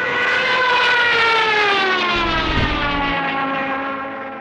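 Sound effect of an airliner going into a dive: one long whine that slides steadily down in pitch.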